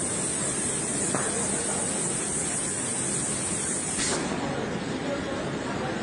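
Steady factory-floor background noise: a continuous hiss with machine hum and faint distant voices. The high hiss cuts off suddenly about four seconds in.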